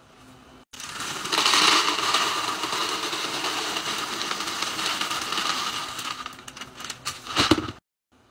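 Dry ring cereal pouring from a plastic bag into an empty clear plastic container, a steady rattling rush of pieces hitting plastic and each other that starts about a second in and thins out as the container fills. A few sharp knocks come near the end.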